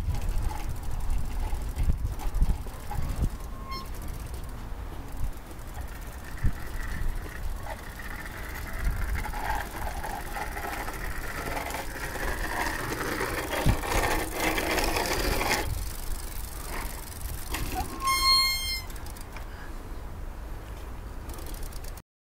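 Outdoor road ambience as a child's small bicycle rolls along asphalt, with wind rumble and handling noise on the microphone. Near the end a short, high beep sounds once.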